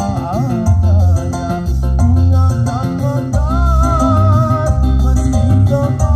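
Music with a singing melody and heavy bass, played loud through a KMP Audio hajatan sound system's stacked speaker cabinets, two rigs combined into one.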